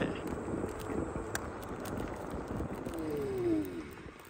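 A Ninebot electric ride-on rolling over rough, cracked asphalt: a steady rumble of wheels and wind, with the motor's whine falling in pitch near the end as it slows.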